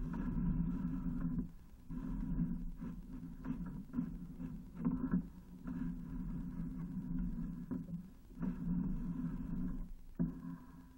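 Sewer inspection camera's push cable being fed down the pipe in strokes: a rough, rumbling drone for a second or two at a time, broken by short pauses about five or six times.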